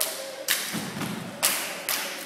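A step team's stomps and claps: three sharp hits, the first about half a second in and the last two about half a second apart near the end, each echoing off a large room.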